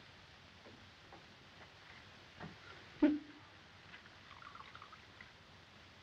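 Gin poured from a cut-glass decanter into a tall glass, a faint trickle and gurgle, with a short knock about three seconds in.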